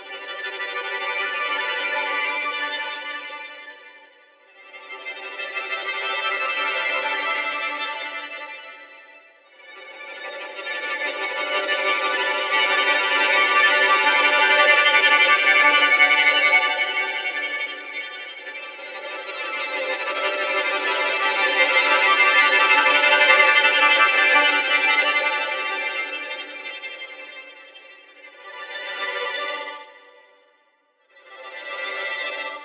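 Sampled solo violin from the 8Dio Studio Solo Violin library, played from a keyboard, bowing sustained tremolo sul ponticello notes in arcs: each note swells up and fades away. Two short swells are followed by two longer, louder ones and a short one at the end.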